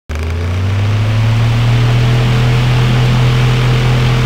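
A loud, steady low drone with an even hiss over it: the sound bed of an animated countdown intro.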